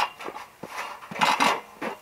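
Steel scaffold parts clinking and knocking as they are handled and fitted together: a few separate metal hits, the first right at the start and a small cluster a little past the middle.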